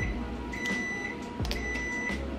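Microwave oven beeping: a single high-pitched electronic beep about half a second long, repeating about once a second.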